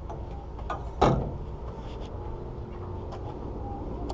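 Steady low hum of the fishing boat's engine, with one sudden loud knock about a second in.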